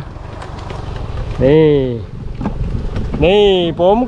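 Wind buffeting the microphone in a low, rumbling haze, broken by a man's short spoken bursts.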